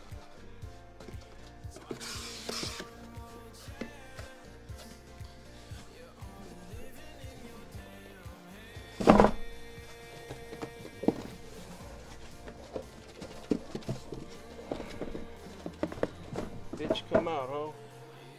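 Background music with a steady beat, over the handling of a cardboard shipping case as it is opened. There is a scraping rasp about two seconds in, a loud thump about nine seconds in, and smaller knocks of cardboard and boxes near the end.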